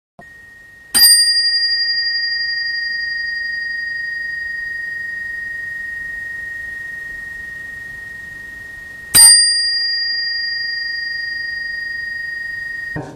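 A small Buddhist bell, struck twice about eight seconds apart; each strike rings out in one clear, high tone that dies away slowly. It is the bell that opens a Chan dharma talk.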